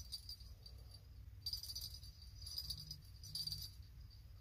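A small bite bell on an ice-fishing rod tip jingling faintly in two short spells, a sign of a fish nibbling at the bait. A low steady hum runs underneath.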